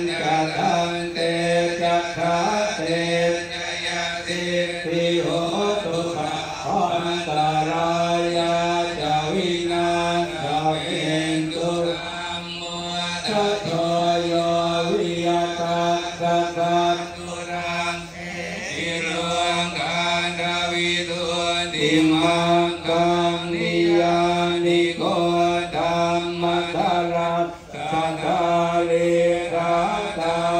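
Thai Buddhist monks chanting together into microphones: a steady, low, near-monotone recitation that runs on with only brief pauses for breath.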